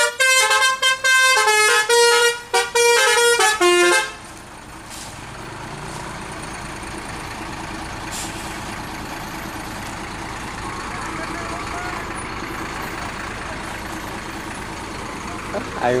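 A bus's telolet horn, a multi-tone air horn, plays a quick tune of short stepped notes and stops about four seconds in. The bus's engine and tyres then run steadily as it drives past and away.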